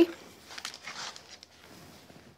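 Faint rustling and a few light knocks of embossed card and machine plates being handled and moved aside on a desk.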